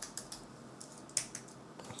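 Typing on a computer keyboard: a handful of scattered keystrokes, one of them sharper a little after a second in.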